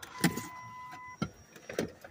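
Clicks and knocks of a car door being opened and handled while someone gets out, with a steady electronic tone for about a second early on, such as a car's warning chime.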